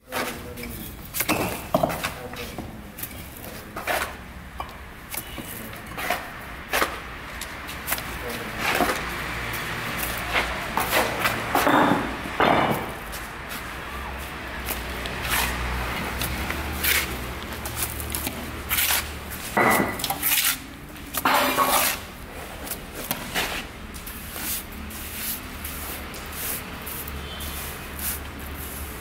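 Steel mason's trowel scraping and tapping as cement plaster is worked onto a concrete plinth: irregular short scrapes and knocks, with a faint low hum underneath.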